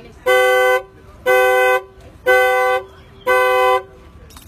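Car alarm of a 2005 Infiniti G35 sounding through the horn: four even horn blasts, each about half a second long, one a second, stopping near the end. It is a faulty alarm that the owner says won't stop.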